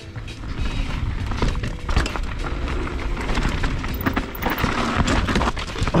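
Full-suspension mountain bike descending a rough dirt and rock trail, heard from a helmet camera: tyres rolling and skidding over dirt and stones, with the frame and drivetrain rattling and wind rumbling on the microphone. Heavier knocks near the end as the front tyre washes out into loose ground and bike and rider go down.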